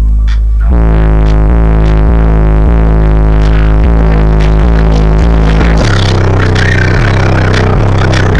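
Bass-heavy music played very loud through a car audio system's 18-inch SMD subwoofers, heard inside the cabin, with deep bass notes dominating. The bass line changes about six seconds in.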